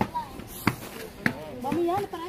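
Children's voices in the street, with three sharp knocks about two-thirds of a second apart.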